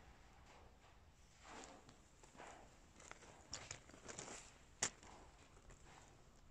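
Faint footsteps on gravelly dirt ground, roughly one step a second, with a single sharp click near the end.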